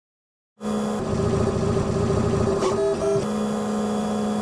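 3D printer's stepper motors whining as the print head moves: a steady low tone, switching to a higher, buzzier tone about a second in, then back to the steady low tone a little after three seconds.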